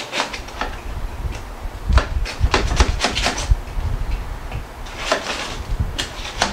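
A knife cutting through a foil-wrapped rack of cooked baby back ribs on a tray: irregular crinkles of aluminium foil and knocks of the blade against the bones and tray, busiest about two to three and a half seconds in.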